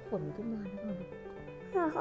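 A child talking in a high, sliding voice, briefly at the start and again near the end, over steady background music.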